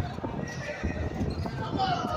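Basketball game sounds on a concrete court: repeated knocks of the ball bouncing and players' footsteps, with voices in the background.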